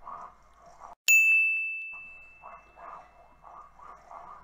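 A single high-pitched ding about a second in: one clear tone that rings out and fades over about a second.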